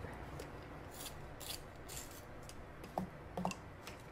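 A coloured pencil being sharpened in a pencil sharpener: a string of short scraping strokes at irregular spacing as the lead is brought to a sharp point.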